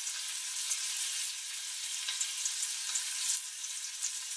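Tiger shrimp frying in butter and garlic in a stainless steel skillet: a steady sizzling hiss with scattered small crackles.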